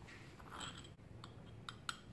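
Faint light scraping and a few small clicks of a metal measuring spoon against a small salt cellar as salt is scooped, the sharpest click near the end.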